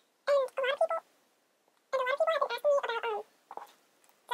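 A high-pitched voice speaking or vocalising in two short spells, the first about a third of a second in and the second from about two seconds in, with a pause between; a few faint clicks near the end.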